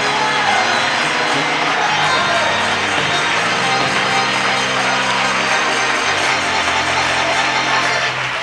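Live gospel church music, held chords over a moving bass line, with a congregation clapping along.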